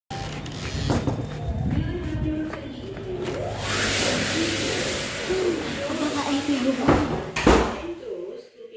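Muffled voices with a loud rushing noise for about three and a half seconds in the middle, and door knocks and thuds, the loudest two near the end, as a washroom door is pushed open and swings shut.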